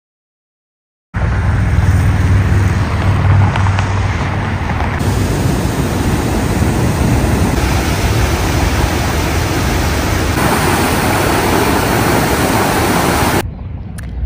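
Water pouring over the Grafton Dam's spillway on the Milwaukee River: a loud, steady rushing that starts about a second in. Its tone shifts slightly a few times, and it is deepest in the first few seconds.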